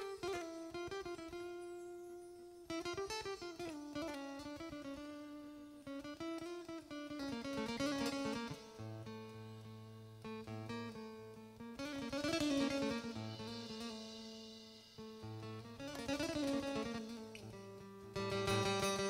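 Acoustic guitar playing a solo melody of single plucked notes that ring and fade one into the next, with low bass notes joining about halfway through.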